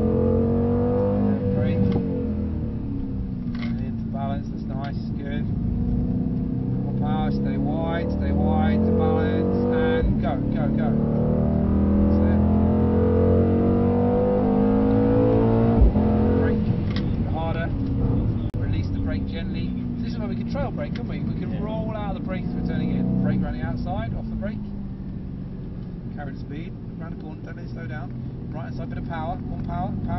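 Mercedes-AMG C63 S 4.0-litre twin-turbo V8, heard from inside the cabin, with its revs rising and falling repeatedly as the car is driven hard through a series of corners. About halfway through there is one sharp thump.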